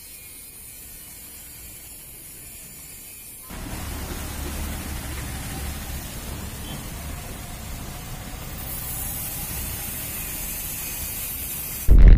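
Steady outdoor background noise, a hiss at first, that becomes louder with a low rumble about three and a half seconds in. A short, much louder burst comes at the very end.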